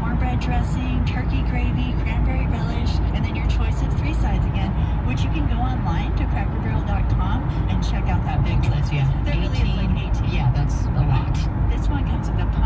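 Steady low road and engine rumble inside the cabin of a vehicle cruising at highway speed, with indistinct voices over it.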